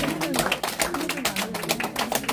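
Rapid, irregular clicks and taps over faint voices in the room.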